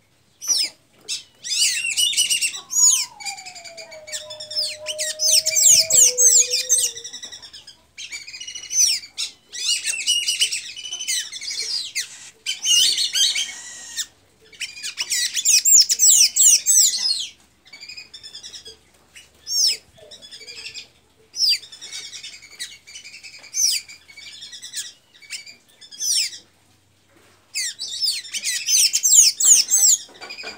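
Caged sanhaço (pipira azul, a Thraupis tanager) singing: squeaky, rapid twittering phrases of one to three seconds, repeated again and again with short pauses.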